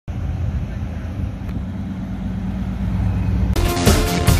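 A classic car's engine running as it drives by, a steady low sound growing slightly louder. Upbeat intro music cuts in suddenly about three and a half seconds in.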